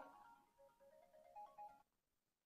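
Near silence with a faint electronic melody of plain single tones stepping up and down in pitch, which stops near the end.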